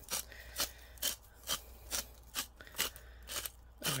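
Hand-twisted salt grinder grinding salt over raw steaks: a dry, crunching rasp with each turn, about two to three strokes a second. The grind is fine.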